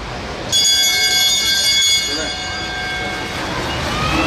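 A track-cycling bell rings loudly for about a second and a half, then dies away. It is the final-lap bell, signalling that the riders have started their last lap.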